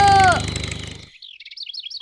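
Cartoon sound effect of small birds chirping: a quick run of short, high tweets comes in about halfway through as the night scene turns to morning.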